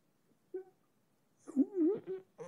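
A pause in speech, then about a second and a half in a man's short wordless hesitation sound with a wavering pitch, like a drawn-out 'hmm'.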